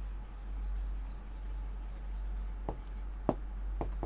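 A pen stroking across a green writing board as a word is written, a faint scratching with a few light taps in the second half. A steady low hum runs underneath.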